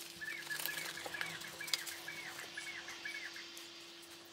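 A small bird calling in a quick run of short chirps, about four a second, with the rustle and clicks of rubber kitchen gloves being pulled onto the hands, over a steady low hum.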